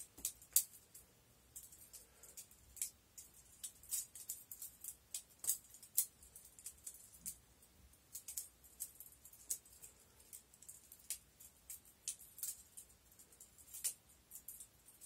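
Butterfly trainer knife being flipped by hand: its handles and blade clack together in quick, irregular clicks, several a second.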